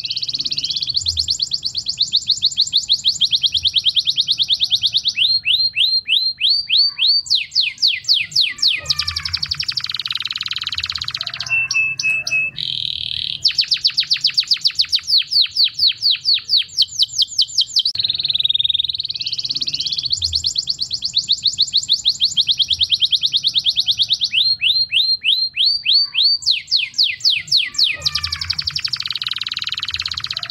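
Domestic canary, a white crested bird, singing a long high-pitched song: one trill of rapidly repeated notes after another, each held a second or two before switching to a new note, with a few brief breaks. The same sequence of trills comes round again about two-thirds of the way through.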